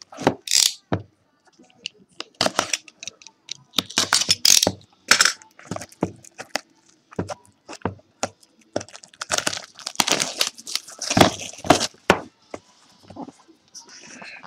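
Plastic wrapping on sealed trading-card boxes and packs being torn open and crinkled, in irregular crackles and short tearing bursts, busiest about ten seconds in.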